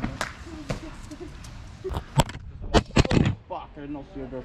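A run of sharp knocks and thuds on concrete. The loudest come a little past two seconds and in a quick cluster around three seconds in, as a parkour landing is followed by the camera being knocked over. Faint voices come in between.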